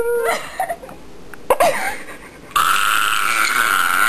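Young women laughing, then, starting suddenly about two and a half seconds in, a loud, steady, drawn-out vocal noise.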